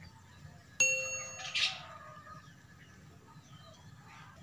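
A single bell-like ding sound effect about a second in: a sharp strike whose ringing tones fade over about a second, followed by a short noisy swish. This is the notification-bell sound of an animated subscribe button.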